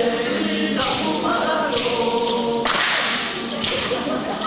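A group of voices chanting in unison for a traditional dance, holding and shifting sung notes, broken by a few sharp strokes and a loud noisy burst about three seconds in.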